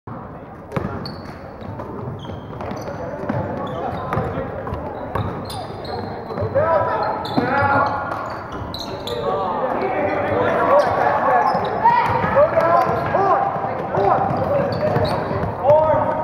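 Basketball game in a gymnasium: a ball bouncing on the hardwood floor, short high squeaks of sneakers on the court, and players, coaches and spectators calling out, the voices busier and louder in the second half.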